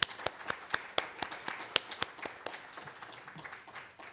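Audience applause: a spread of hand claps with some loud, sharp ones standing out nearby, dying away near the end.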